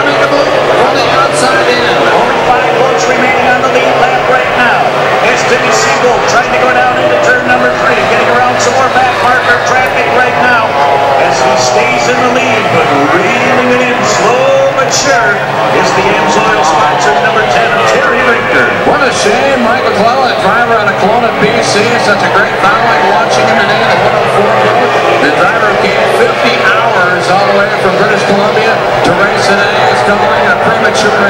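Two-stroke outboard racing engines of Formula 1 tunnel boats running flat out, several engines' whines rising and falling in pitch as the boats accelerate and back off through the turns.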